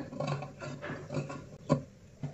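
Tailor's shears snipping into the seam allowance of a stitched fabric piece, clipping it up to the curve so it will turn neatly, with the fabric rustling as it is handled. A sharper click near the end.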